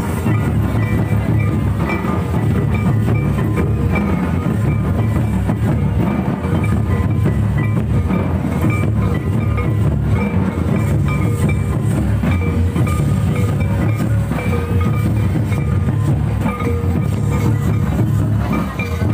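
Loud Santali folk dance music: deep, steady drumming with a high melody line over it, distorted by the recording.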